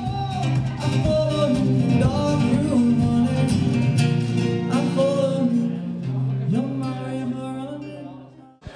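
Acoustic guitar played with a voice singing over it: a song performed live, dying away near the end.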